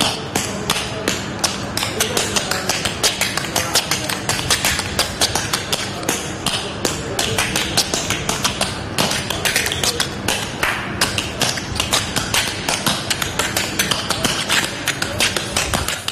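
Rapid, rhythmic tapping, many sharp taps a second without a break, over upbeat music.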